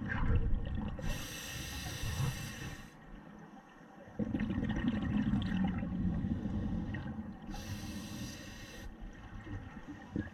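Scuba diver breathing through a regulator underwater: two hissing inhalations of a second or two each, and between them a longer exhalation of rumbling exhaust bubbles.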